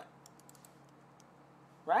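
Several faint, quick clicks at a computer, over a low steady hum. A man's voice starts near the end.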